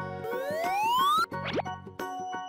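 Children's background music with cartoon sound effects: a rising whistle-like glide lasting about a second, then a short, quick swoop about halfway through.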